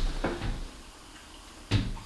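One sharp knock near the end, with faint handling noises before it.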